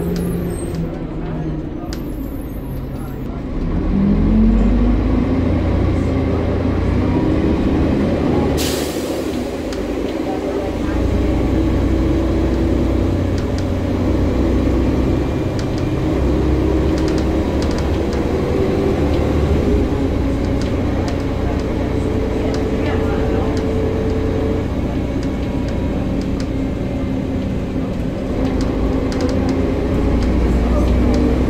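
Bus engine and driveline heard from inside the passenger saloon while under way, the engine note rising as it pulls through the gears. About nine seconds in there is a short, sharp hiss of air released by the air brakes as the engine drops back, before it pulls away again.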